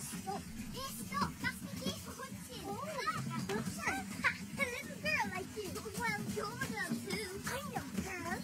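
Film dialogue: two young girls' voices talking quickly and excitedly back and forth.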